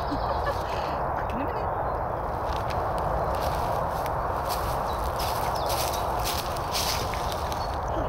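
Crackling rustles over a steady background hiss, from handling and moving about on dry leaf litter. They run from about two and a half seconds in until near the end.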